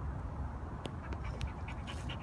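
A pit bull panting, over a steady low rumble, with two sharp clicks near the middle.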